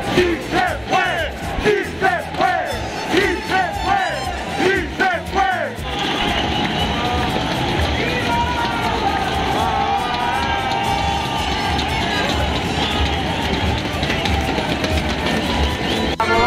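Football stadium crowd: close-by fans chanting in short, repeated rising-and-falling shouts for about six seconds, then a steady mass of crowd noise with many voices.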